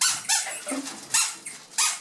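Small rubber squeaky ball squeezed by hand, giving several short, sharp squeaks.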